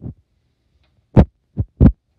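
A few short thumps: a faint one at the start, then three loud ones close together in the second half.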